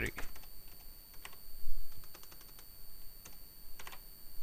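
Computer keyboard keys tapped in a scattered run of short clicks as a word is typed.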